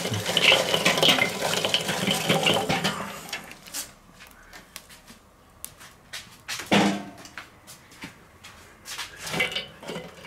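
Glowing charcoal briquettes clattering out of a metal chimney starter onto the charcoal grate of a kettle grill for about three seconds. After that come a few scattered clinks and one louder knock about seven seconds in.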